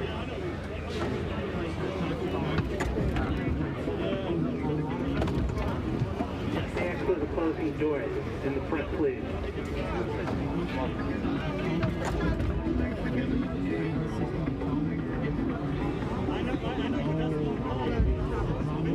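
Voices and chatter of people on a subway station platform, with music in the background.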